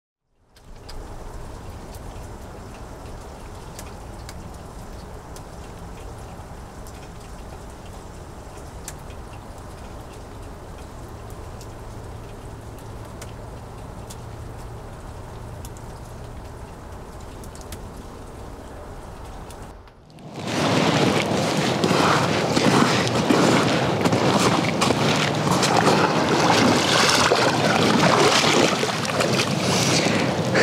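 Rain: a steady, low background noise with faint scattered ticks, then about twenty seconds in a sudden switch to a much louder, full, even hiss of heavy rain.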